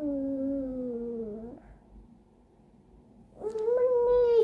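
A small child's drawn-out, wordless vocal sound, gliding slightly down in pitch for about a second and a half. Near the end comes a second, higher and louder one.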